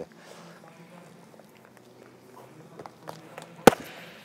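A few light footsteps on the gym floor as the boxer jumps in, then one sharp slap of a boxing glove landing on a coach's punch mitt near the end.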